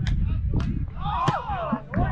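Strong wind rumbling on an action camera's wind-muffled microphone, with a few sharp knocks and distant voices calling about a second in.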